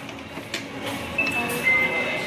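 Restaurant background noise with a single sharp click about half a second in, then a high, steady beep-like tone in the second half; a second, slightly lower tone joins it near the end.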